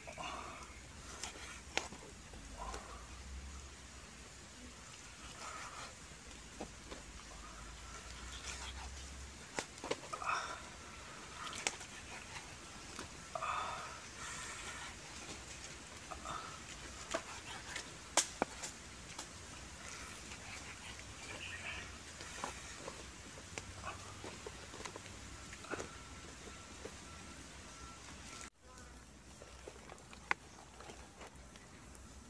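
Kitchen knife slicing through boiled pork belly on a wooden chopping board, with scattered sharp taps as the blade meets the board.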